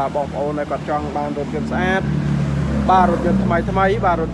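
A person talking, with a steady low engine hum underneath that grows louder about halfway through.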